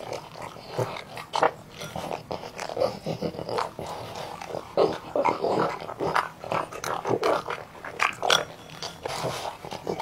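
A French bulldog eating noodles from a bowl: slurping and chewing, a run of irregular wet smacks and clicks.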